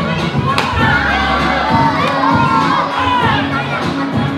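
A sharp crack about half a second in, from a taekwondo kick breaking a held wooden board, followed by a young audience cheering and shouting.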